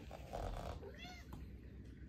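A short burst of noise, then a domestic cat's short meow about a second in, rising and falling in pitch.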